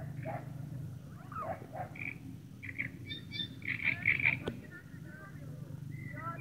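Frogs calling from the reeds of a marsh river, mixed with distant voices from kayakers out on the water, over a steady low hum. The calls come in short, irregular bursts and are loudest about four seconds in.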